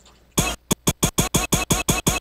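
A hardware sampler retriggering a short pitched sample in a fast stuttering run, about six hits a second, starting about half a second in after a brief quiet.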